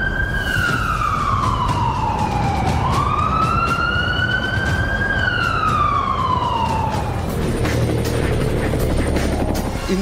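An emergency siren wailing in slow glides: its pitch falls over about three seconds, rises again over about two, falls once more and fades out past the middle, over a steady low rumble.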